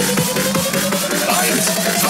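UK happy hardcore track in a build-up: a fast, even drum roll of about five hits a second under synth tones that rise steadily in pitch.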